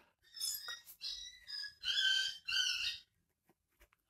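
Pen writing on notebook paper: a run of short scratchy strokes, some with a thin squeak, stopping about three seconds in.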